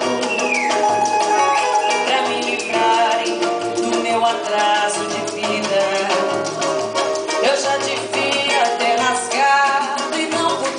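Live samba performance: a woman sings the melody into a microphone over a band with hand percussion and shakers keeping a steady rhythm.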